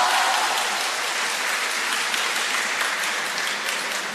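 Spectators applauding in a table tennis arena at the end of a point: steady clapping that eases off slightly toward the end.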